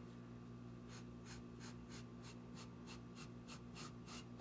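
Felt-tip marker drawing on brown pattern paper, a faint run of short scratchy strokes about three or four a second as a curve is freehanded.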